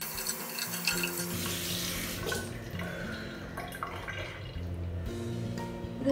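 Tap water running into a sink and splashing while a face is rinsed, over background music; the water sound thins out after about two seconds.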